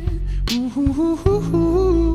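Live band music: keyboards, bass and drums under a wordless sung vocal line that slides between notes, with a drum hit about halfway through.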